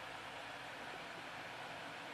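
Steady faint hiss of room tone and recording noise, with no distinct sound.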